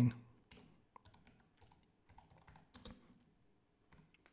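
Computer keyboard being typed on: faint, irregular keystrokes spelling out a short entry.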